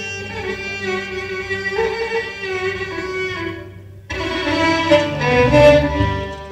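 A violin plays a sustained solo melody over a live ensemble with low string backing. The music thins out briefly just before four seconds in, then comes back suddenly and louder.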